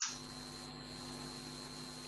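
Steady electrical hum with a thin high whine over a faint hiss: the background noise of the recording setup, with no other sound over it.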